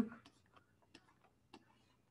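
A few faint, scattered ticks of a stylus tapping a tablet screen as lines are drawn.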